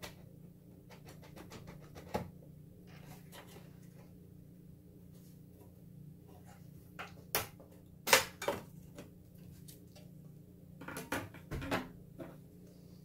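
Scattered clicks, knocks and light scrapes of hands working a PCI sound card loose and out of its slot in a desktop tower case, the loudest knock about eight seconds in and a quick run of clicks near the end. A faint steady low hum runs underneath.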